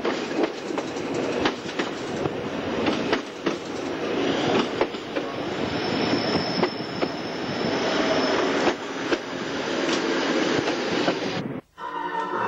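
Stanga-TIBB electric railcar running on the Sangritana line: a steady rumble of the moving train with irregular clicks of the wheels over rail joints. There is a faint high wheel squeal about halfway through. The train sound cuts off abruptly just before the end.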